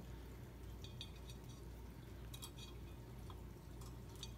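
A few faint, light metallic clinks from the gold-painted wire wreath frames as they are handled while fishing line is tied between them, over a steady low room hum.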